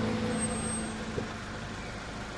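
A car's engine and steady road noise as it pulls up, while the last sustained notes of background music fade out in the first half second. There is a single light click just over a second in.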